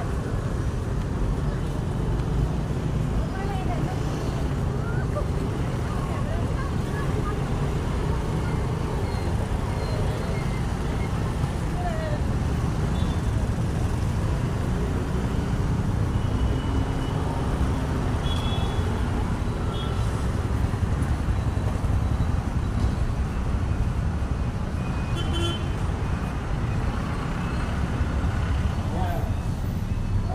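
Steady road traffic noise, a continuous low rumble, with faint voices and a few brief higher tones over it.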